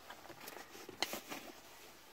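Faint handling noise: light rustling with a few soft clicks, the clearest about a second in, as car keys and the filming phone are handled.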